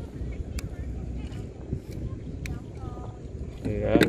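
Low, steady rumble of a small wooden boat under way on the river, with a few faint clicks. A voice starts speaking near the end.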